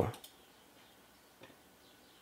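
Near silence with one faint mouse click about one and a half seconds in, ticking a checkbox in the software.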